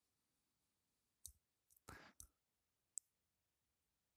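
Near silence, broken by a few faint short clicks between about one and three seconds in.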